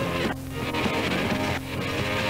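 Rock music with electric guitar, cut off abruptly twice for an instant, as in a chopped-up tape edit.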